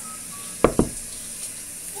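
Shower water running behind a closed bathroom door, a steady hiss, with two quick knocks on the door a little over half a second in.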